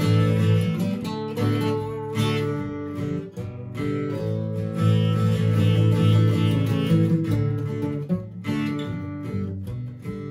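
Two acoustic guitars playing a song together with strummed chords.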